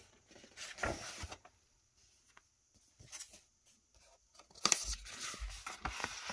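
Paper pages of a large booklet being turned: a short rustle about a second in, then a louder rustle of turning pages with a few soft handling knocks near the end.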